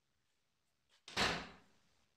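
A door banging shut once, about a second in, the bang dying away over about half a second.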